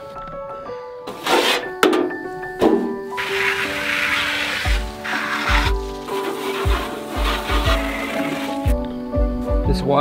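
Background music with a steady beat. Under it, a few short knocks, then water splashing out of an upturned plastic bucket onto grass for a few seconds, starting about three seconds in.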